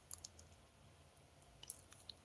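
Faint taps of fingers on a phone touchscreen being typed on: a few sharp clicks near the start and a few more near the end, over near silence.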